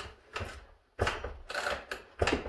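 Mechanical clicking and rattling from a small McCulloch top-handle chainsaw being worked by hand: a short clack, then about a second of dense rattling clatter.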